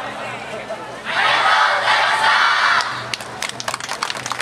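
A large group of young voices shouting together in unison for about two seconds, then scattered clapping from the audience starting near the end.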